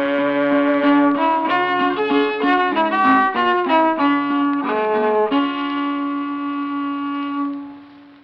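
Old-time fiddle playing the closing instrumental phrase of a ballad, a run of changing notes that settles into one long held note, which fades out near the end.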